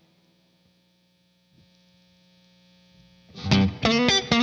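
Electric guitar through a J. Rockett Airchild 66 compressor pedal: for about three seconds only a faint, steady electrical hum from the rig is heard, then loud picked notes with bends come back in near the end.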